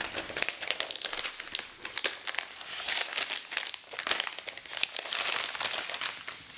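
A thin plastic protective wrap crinkling as a new laptop is slid out of it, in a dense run of quick crackles.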